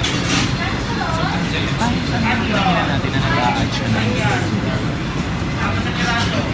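Restaurant background sound: indistinct voices and music over a steady low rumble of room noise.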